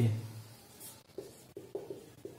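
Marker pen writing on a whiteboard: about four short, faint strokes, starting about a second in.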